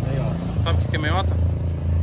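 A motorcycle engine runs with a low, steady rumble as the bike rides away up the street. Brief snatches of voices come in about a second in.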